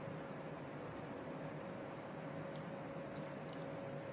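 Lime juice being poured from a bottle into a small metal bar jigger: faint soft drips and ticks in the middle, over a low steady hum.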